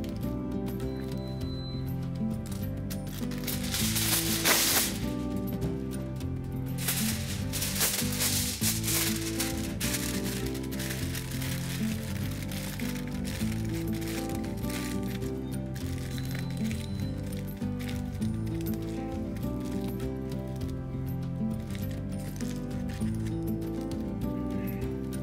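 Background music with a repeating run of notes, and aluminium foil crinkling as it is pressed down over a pot to seal it. The crinkling is loudest about four seconds in and comes again around seven to ten seconds in.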